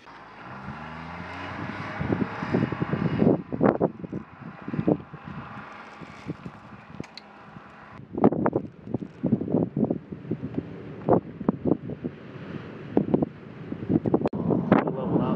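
A military jet aircraft flying overhead, its engine noise strongest in the first half, with wind buffeting the microphone in irregular gusts.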